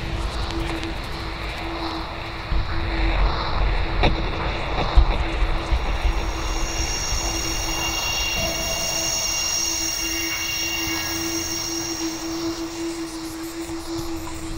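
Dark ambient fantasy music: a low rumbling drone under one steady held note, with a cluster of high, shimmering held tones coming in about halfway through and fading near the end.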